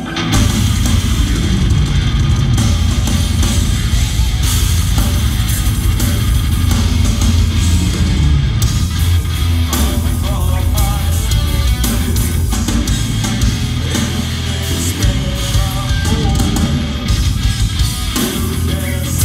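Live heavy progressive-metal band playing: distorted electric guitars, bass and drum kit come in hard at the very start and carry on as a dense, loud passage.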